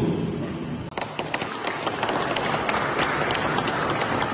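Audience applauding, the clapping starting about a second in.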